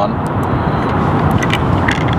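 Steady low outdoor background noise, with a few small clicks near the end as a USB charging cable is pushed into a phone's charging port.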